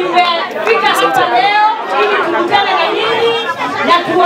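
Speech only: a voice talking without a break.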